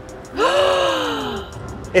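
A woman's drawn-out exclamation of delight, an 'ooh' that rises and then slowly falls in pitch, lasting about a second.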